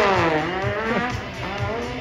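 Side-by-side UTV engine revving under load on a snow track, its pitch dropping sharply in the first half second, then rising and falling again more lightly.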